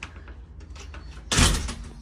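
Sliding glass patio door slid along its track: one short, loud sliding noise lasting about a third of a second, about a second and a half in, after a few faint clicks.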